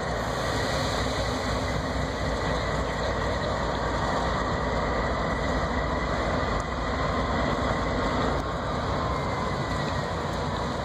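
CSX and Union Pacific diesel-electric freight locomotives running at low throttle, a steady engine sound with a faint high whine over it.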